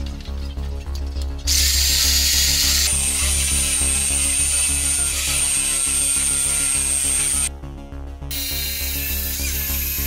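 Corded jigsaw cutting a thick 2x12 board. It starts about a second and a half in with a steady high whine, stops briefly near the end, then runs again.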